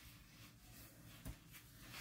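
Near silence: room tone, with one faint short click about a second and a quarter in.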